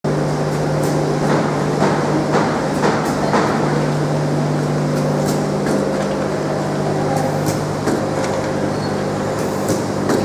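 Automatic egg carton labeling machine running with a steady low hum, overlaid by sharp clacks of the mechanism and cartons, about two a second over the first few seconds and then sparser.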